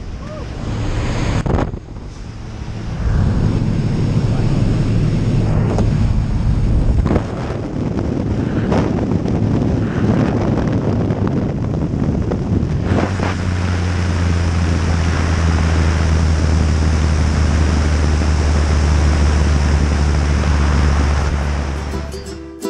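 Cabin noise of a small jump plane in flight: the piston engine and propeller drone under a rush of wind. About 13 s in it settles into a steadier, louder low hum with stronger hiss over it.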